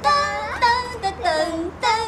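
A young girl's high-pitched laughing and sing-song squeals with a woman's voice singing along, in held and gliding notes, as the girl is swung round and round.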